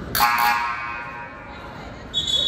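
Gym scoreboard horn giving one buzz of about half a second, its echo dying away in the gymnasium.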